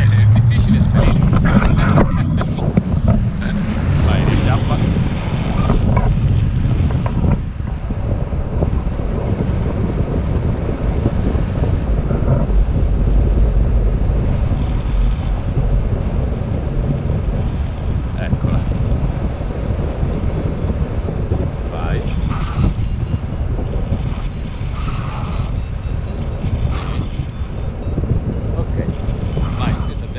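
Wind from the paraglider's flight buffeting the camera microphone: a loud, steady low rumble of rushing air, a little stronger in the first several seconds.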